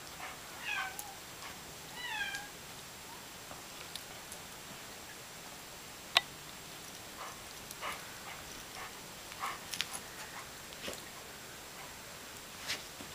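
A dog gives two short, high-pitched whines, each falling in pitch, about a second apart near the start. A single sharp click comes about halfway through, followed by a few faint short sounds.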